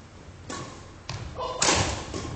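Badminton rally on a wooden gym floor: players' feet thudding on the boards and rackets striking the shuttlecock, with the loudest impact about one and a half seconds in.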